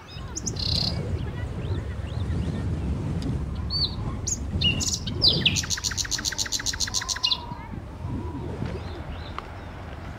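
Birds chirping in short calls, with one rapid, even trill of about eight notes a second lasting a couple of seconds around the middle. A low rumble runs underneath and eases off near the end.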